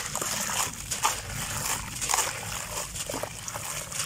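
A clump of coarse, grainy sand crumbled by hand, grains spilling and trickling into a basin of water with a steady gritty hiss and many small crackles.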